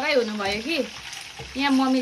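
A woman's voice over a steady background sizzle of food frying in a pan.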